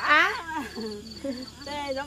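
People talking, a woman's voice loudest at the start, over a steady high-pitched insect chirping that repeats in short pulses several times a second.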